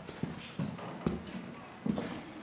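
A few soft knocks at irregular intervals, roughly half a second to a second apart, over a quiet background.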